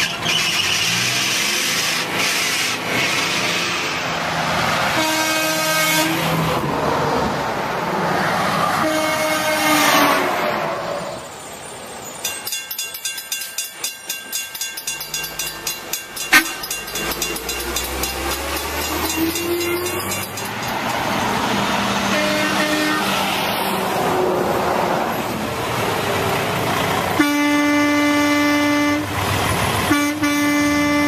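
Truck air horns sounding in several separate blasts over passing road-traffic noise. The longest is a steady single-note blast near the end. Midway there is a stretch of rapid rhythmic clatter with a low rumble.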